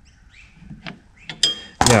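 Metal hand tools clinking against a steel brake drum and its adjuster. A few faint clicks come first, then several sharp clinks with a short metallic ring in the last second.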